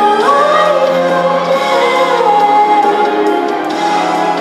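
A young girl singing solo into a microphone: one long held note that slides up at the start, over an instrumental backing track.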